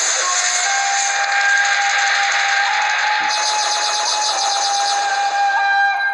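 Loud dramatic TV-serial sound-effect sting: a dense hissing rush over a steady held tone. About three seconds in, a fast rattling shimmer is added on top, and it all fades as the dialogue resumes.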